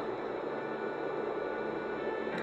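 Soft, steady film-score music of sustained tones over a constant noisy hiss.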